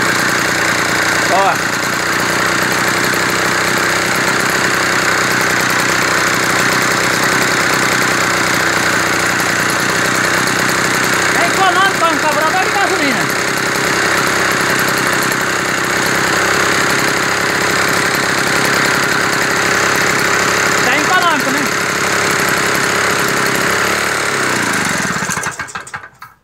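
Small Yanmar KT30 two-stroke, air-cooled single-cylinder engine running steadily. Near the end it slows with falling pitch and dies because it has run out of gasoline.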